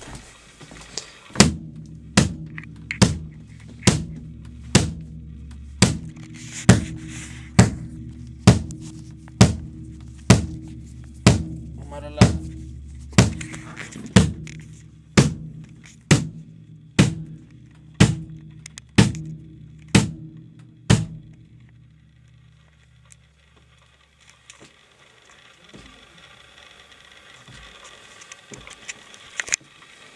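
Kick drum of a freshly tuned DW drum kit struck on its own about once a second, some twenty times in a row, each hit leaving a low ring. The strikes stop about two-thirds of the way through, leaving a quiet room.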